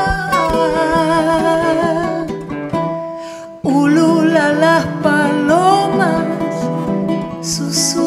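Charango and nylon-string classical guitar strummed together under a woman's singing voice. The music thins out about two and a half seconds in and comes back in full with the voice about a second later.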